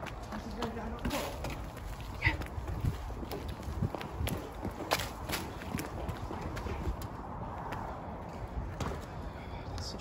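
Hurried footsteps on concrete stepped terracing: irregular scuffs and knocks of shoes on the steps.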